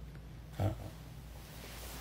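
A pause in a man's lecture: faint steady room hum, with one brief low grunt-like sound from the speaker about half a second in.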